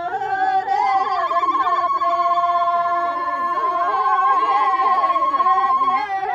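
Women ululating in celebration: a high, fast-trilled cry starts about a second in and is held for about five seconds, with other women's voices beneath it.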